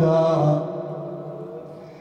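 A man's voice chanting Arabic elegy verses through a microphone. It holds a note that ends about half a second in, then fades away in the hall's echo.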